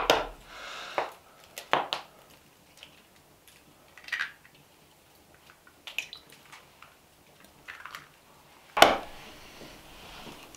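Eggs being cracked and separated by hand over a ceramic bowl: a few sharp, separate clicks and knocks of eggshell and pottery, the loudest knock near the end.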